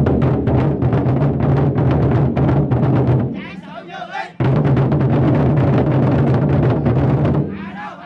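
A troupe of large lion-dance drums beaten together in a fast, dense roll. The drumming breaks off about three seconds in and again near the end, with voices heard in the short gaps, and resumes after the first break.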